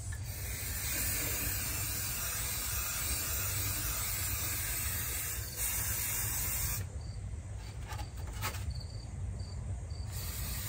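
Aerosol spray paint can spraying a light touch-up coat: a steady hiss for about seven seconds that stops suddenly, then a couple of light clicks.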